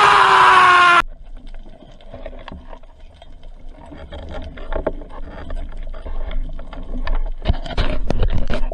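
A man's loud, drawn-out yell, falling in pitch, that cuts off about a second in. Then underwater sound: a low water rumble with scattered clicks and crackles, louder near the end.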